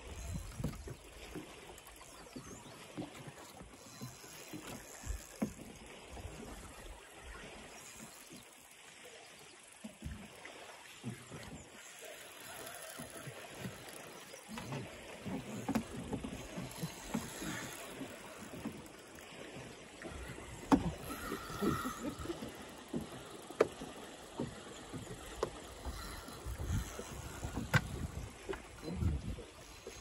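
Small waves lapping and slapping against a small boat's hull, with irregular soft knocks and a few sharp clicks.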